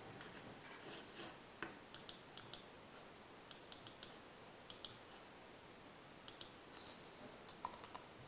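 Faint computer-keyboard clicks, a few keys at a time in small irregular clusters, over near-silent room tone.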